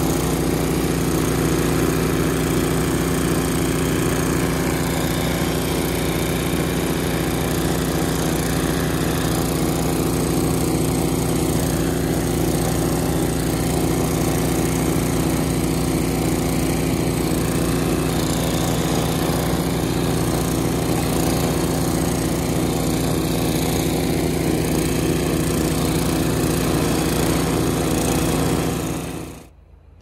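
John Deere TRS24 snowblower's engine running steadily under load as the machine throws snow out of its chute. The sound stops abruptly near the end.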